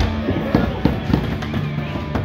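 Background music with several sharp knocks and clacks over it, in the first half and again about a second in: a skateboard's wheels and trucks hitting a wooden mini ramp and its coping.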